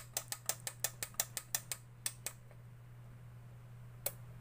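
Homemade CRT picture-tube cleaner/rejuvenator clicking rapidly and a little unevenly, about six or seven clicks a second, as it works on a very dirty picture tube that is flickering. The clicking stops a bit past two seconds in, over a steady low electrical hum, and a single click comes at the very end.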